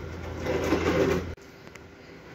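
Wooden cabinet holding a filled fish tank being pushed across the floor: a rasping scrape over a steady low hum, cutting off suddenly about a second and a half in.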